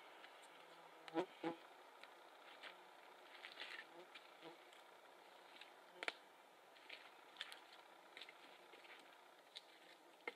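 Campfire of split wood crackling faintly, with scattered small pops. Two sharp wooden knocks come about a second in as firewood is handled, and a louder crack comes near the middle.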